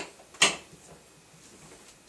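A single sharp click from the shower door's handle hardware being worked by hand, about half a second in, followed by faint handling sounds.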